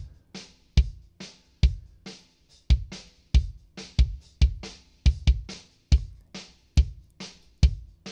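Recorded kick drum, two kick mics in a group, playing a beat of sharp hits about two a second, each a low thump with a bright beater click. It is heard in an A/B comparison of the dry kick and the u-he Satin tape-machine emulation.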